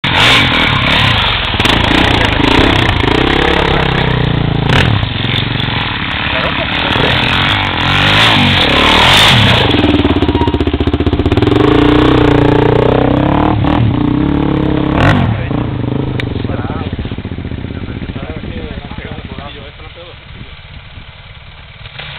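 Off-road motorcycle revving hard up a steep climb close by, its engine note rising and falling with the throttle, with a few sharp knocks along the way. The engine fades away over the last several seconds.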